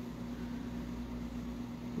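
Steady background hum with a faint hiss and one constant low tone: room tone.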